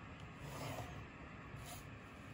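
Faint scratching and rustling of a coloured pencil and a wooden ruler on paper as a grid line is drawn and the ruler is shifted across the worksheet, with a brief sharper scrape near the end.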